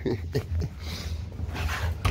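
Dogs whining and yelping in short, pitched cries at the start, eager to be let out of the car.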